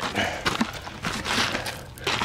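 Irregular knocks and scuffs of plastic buckets being moved about and feet shuffling on gravel.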